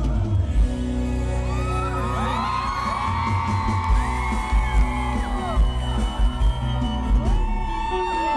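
Sertanejo duo's live concert music through a loud PA, with heavy bass, heard from within the crowd. Long held sung notes with bending pitch come in about two seconds in.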